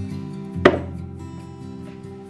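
Background music with held tones; about two-thirds of a second in, one sharp click as a white shelf is snapped into place on a shelving frame.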